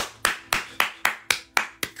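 Hands clapping: about eight sharp claps at an even pace of roughly four a second.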